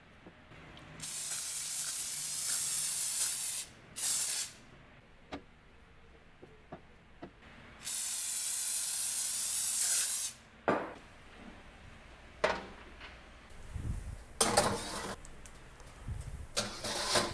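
Cooking oil spray hissing from a can onto floured chicken drumsticks in three sprays: a long one, a short one, then another long one, giving the chicken a heavier coat of oil. A few short knocks follow near the end.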